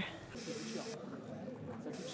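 Quiet background of faint distant voices, with two short bursts of high hiss, the first lasting about half a second and the second near the end.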